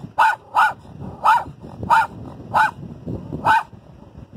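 Small dog barking excitedly at a wild donkey: six sharp barks in a row, stopping just before the end.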